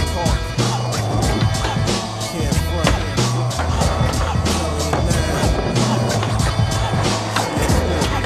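Hip-hop beat with a bass line and drums, no rapping in this stretch. Skateboard sounds are mixed over it: urethane wheels rolling and trucks grinding on concrete ledges.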